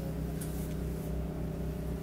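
A steady low hum made of several fixed tones, with a faint tick about half a second in.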